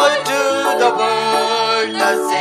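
A Tamil Christmas carol sung by a man into a handheld microphone, with women's voices alongside, over steady held notes of instrumental backing.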